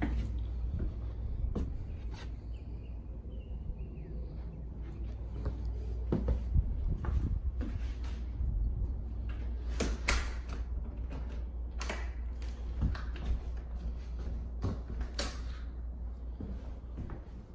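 Scattered knocks and clicks of a hand-held camera being carried and handled while someone walks through rooms, over a steady low rumble.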